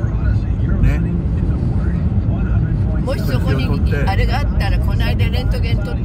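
Steady low road and engine rumble inside a moving car's cabin, with an indistinct voice from the car radio over it, clearer in the second half.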